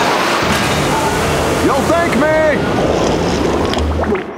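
Loud, churning rush of water, with a person's voice crying out a few times around the middle.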